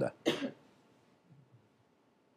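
A single short cough right at the start, then quiet room tone.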